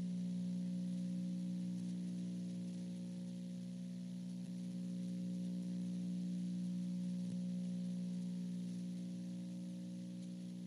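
Steady electrical hum of several low, even tones over a faint hiss, unchanging throughout.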